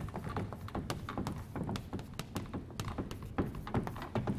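Chalk writing on a blackboard: an irregular run of short taps and scratches as each letter is stroked.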